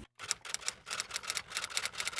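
Typing sound effect: a quick, uneven run of light key clicks, about eight a second, starting just after a moment of dead silence.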